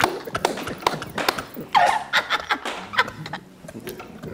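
A small group laughing, with a run of sharp hand claps and slaps in the first couple of seconds; the laughter dies down near the end.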